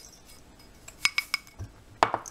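A small ceramic dish clinking against a stainless steel mixing bowl: about four quick ringing clinks a second in, as it is tapped to empty out brown sugar, then a soft low thump.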